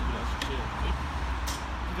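Two light clicks from the hinged handlebar and frame of a folding electric bike being handled as the handlebar is folded down, over a steady low background rumble.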